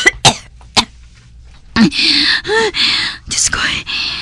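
A voice actor coughing: a few short sharp coughs, then a longer rasping bout of coughing and gagging.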